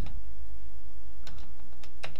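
A few separate keystrokes on a computer keyboard, sharp clicks in the second half, as a terminal command is entered. A steady low hum runs underneath.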